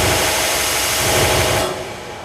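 Loud, dense electronic noise from a live electronics set, spread across the whole range from deep low end to high hiss, dropping away sharply near the end.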